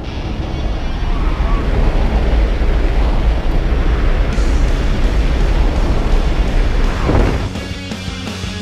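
Loud rush of wind buffeting the camera microphone, with the jump plane's engine and propeller noise through the open door, as the tandem pair leaves the aircraft into freefall. It builds over the first second and drops away near the end as backing rock music returns.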